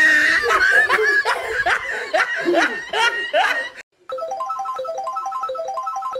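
Laughter, a run of short snickering bursts, for nearly four seconds. After a brief break a bright, evenly repeating tune of short high notes begins.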